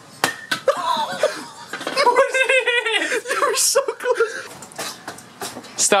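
People laughing, with a few sharp knocks mixed in.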